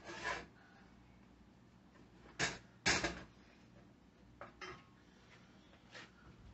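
A utensil scraping and knocking against a stainless steel saucepan while stirring melting butter: a few short strokes, the loudest pair a little under halfway through.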